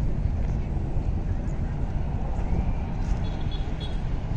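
Outdoor ambience on a busy park road: a steady low rumble with faint voices of passers-by. A few faint high tones come in near the end.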